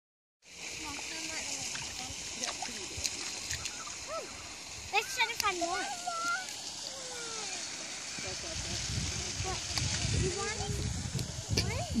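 Light splashing of bare feet wading through ankle-deep water over sand, over a steady outdoor hiss. A low rumble builds from about eight seconds in.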